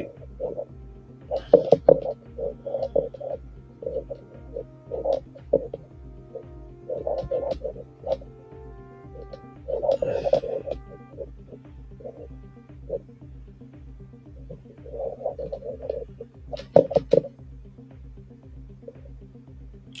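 Background music with a steady low beat, with a few sharp clicks.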